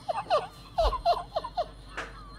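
A man laughing hard in a quick run of short, high, yelping laughs, about four a second, each one falling in pitch.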